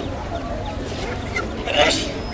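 Busy bird-market hubbub: crowd voices with caged birds calling in short, high notes. A short, loud burst of noise comes near the end.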